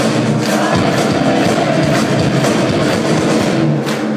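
Live rock band playing loud in a concert hall: electric guitars and drums, with drum hits about twice a second, heard from within the crowd.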